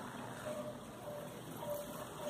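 Quiet room noise: a low steady hiss with three faint short tones about half a second apart.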